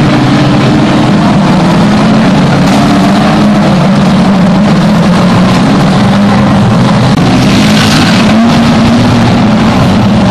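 Engines of a pack of banger racing cars running hard around an oval, several engines overlapping, their pitch rising and falling as the cars accelerate and lift off.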